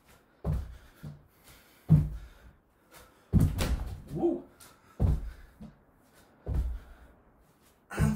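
Feet landing on a wooden floor from repeated squat jumps: five heavy thuds, about one every one and a half seconds.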